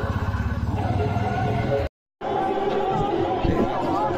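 Several people talking outdoors, with a low, rapid pulsing underneath in the first half. About halfway through the sound cuts out completely for a moment, then resumes with voices and chatter.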